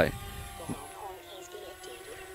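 DJI Spark quadcopter's motors and propellers spinning up and lifting it off: a steady whine made of several tones, some of them wavering in pitch in the second half as it climbs.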